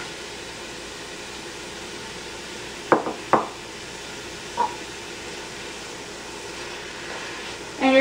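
Ground turkey sizzling in hot oil in a steel pot, a steady hiss. About three seconds in, two sharp knocks close together against the pot, and a lighter knock a second later.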